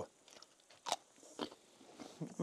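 Crisp crunch of teeth biting into a raw cucumber about a second in, followed by a second, quieter crunch of chewing.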